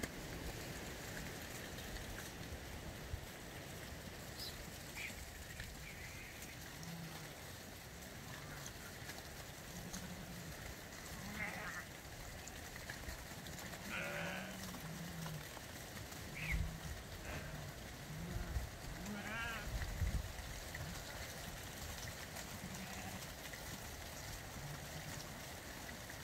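A flock of sheep being herded, bleating now and then. The calls are scattered and come mostly between about 11 and 20 seconds in, over a faint steady background with a few dull low thumps.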